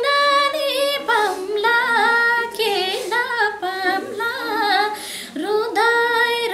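A woman singing a song unaccompanied into a microphone, holding long notes with wavering, ornamented turns and brief breaks for breath.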